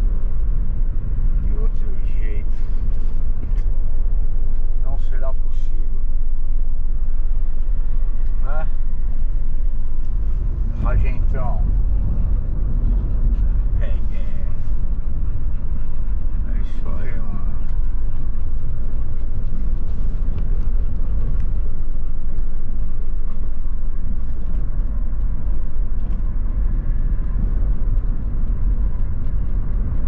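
Steady low road and engine rumble inside a moving car's cabin. Now and then a short sound bends up and down in pitch, about six times over the first eighteen seconds.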